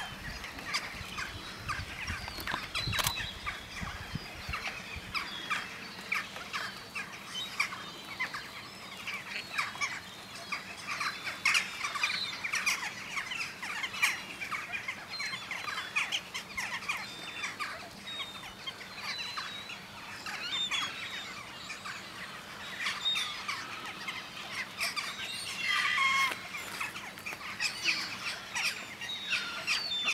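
Many birds calling over one another in a dense, continuous chatter of short calls, a flock's noise with a few louder calls about halfway through and again near the end.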